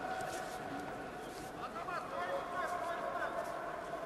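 Human voices calling out in a large hall: long drawn-out shouts, with a few short rising and falling calls about two seconds in.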